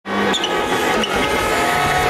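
A rally car's engine running hard at a distance as it approaches down the stage.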